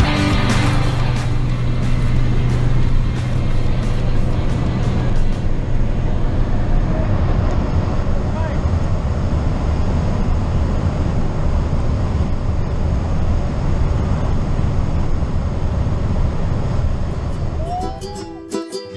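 Steady engine and wind noise inside the cabin of a small high-wing propeller plane in flight. Rock music fades out in the first couple of seconds.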